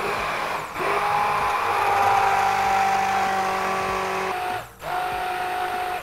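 Stick blender running in a cup of chocolate ganache made with hot cream, a steady motor whine. It cuts out for a moment about three-quarters of the way through, then runs again.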